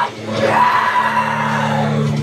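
A male vocalist holds one long, arching note into a handheld microphone over a steady metalcore backing track. The note starts about half a second in, after a brief dip.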